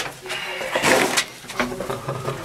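Shuffling footsteps and scraping on the gritty floor of a narrow rock tunnel, loudest about a second in, with brief indistinct voices.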